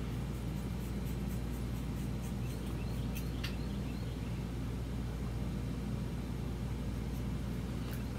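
Scissors snipping through synthetic wig hair while cutting bangs: a quick run of faint, light clicks in the first few seconds, two of them sharper, over a steady low hum.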